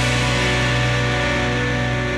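Quiz-show title-bumper music: one loud chord with a strong bass, held and slowly fading.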